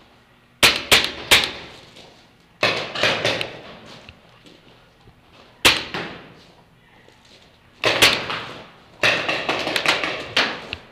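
Paintball markers firing in short bursts of sharp cracks, about five bursts one to two seconds apart, echoing in an indoor arena.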